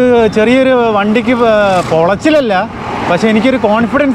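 A man singing close to the microphone in long, wavering held notes, with low road and wind noise from the moving scooter underneath.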